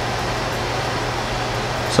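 Steady room noise: an even hiss under a constant low hum, with no clicks or other events.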